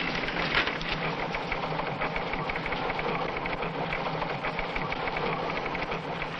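Steady, rapid mechanical clatter of newsroom typewriters and teletype machines.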